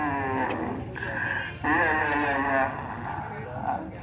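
A man's voice drawing out long, sing-song syllables whose pitch slides downward, twice: the match commentator calling the play.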